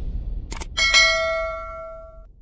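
Subscribe-button sound effect: two quick mouse-style clicks about half a second in, then a bright bell ding that rings and fades away over about a second.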